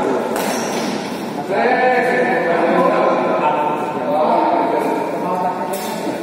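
Several voices talking and calling out in a reverberant sports hall during a badminton rally, with two sharp racket-on-shuttlecock hits, one just after the start and one near the end.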